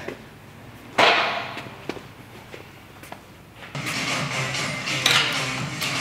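A single sharp clank of gym weights about a second in, with a ringing tail. Then comes quieter gym clatter, and from about two-thirds of the way through, background music with a steady low tone.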